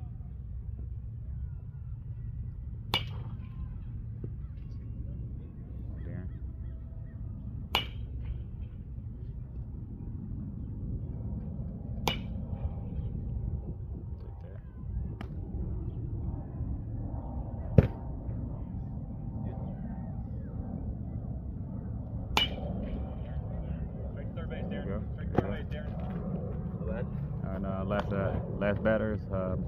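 Metal baseball bat striking pitched balls in batting practice: a sharp, ringing ping about every four to five seconds, six hits in all, the fourth the loudest, over a steady low rumble.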